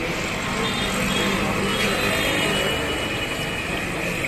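Steady street noise with a motor vehicle engine running, mixed with the hiss of spinach pakoras frying in a large kadhai of hot oil.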